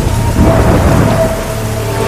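Heavy rain falling, with thunder rumbling and a few steady held music notes underneath.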